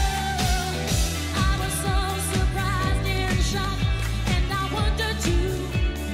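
A live concert recording of a disco song: a female lead singer over a band with a steady dance beat.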